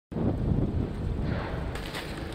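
Wind buffeting the microphone: an uneven low rumble, with more hiss coming in near the end.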